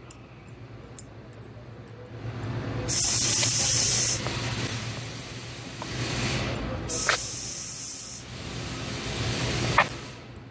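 A steel pick scraping and clicking against an actuator end cap as it pries a guide band out of its groove, with two spells of hiss, about three and seven seconds in.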